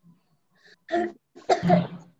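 A person coughing twice over a video-call connection: a short cough about a second in, then a longer, throatier one near the end.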